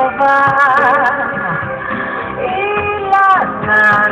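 Music: a sung song with a lead voice holding wavering notes with vibrato over an accompaniment.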